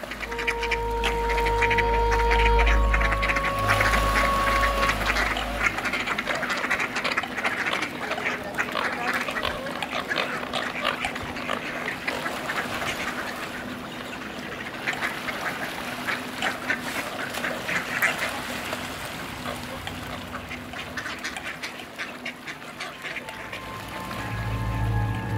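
A large flock of mallards quacking without pause, many calls overlapping. A low drone and a few held tones sound over the first few seconds, then fade out.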